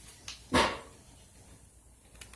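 A dog barks once, short and sharp, about half a second in, just after a faint click.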